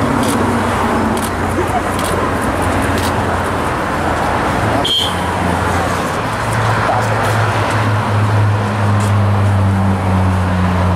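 Road traffic noise with a steady low vehicle hum that grows louder near the end, and one short high beep about halfway through.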